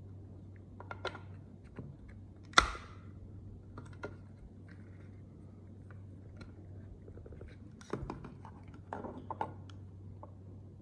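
Plastic wiring-harness connectors and adapter box being handled and pushed together: scattered light clicks and taps, with one sharp click about two and a half seconds in.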